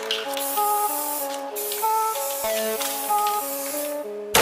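Instrumental intro of a rap track: a melody of short pitched notes stepping through chords, with a hiss of noise layered over it and no beat or bass yet.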